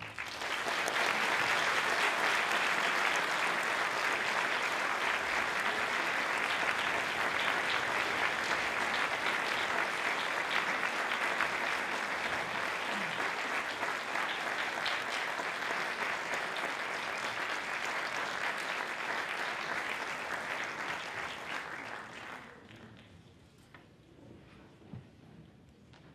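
Theatre audience applauding steadily, fading away near the end.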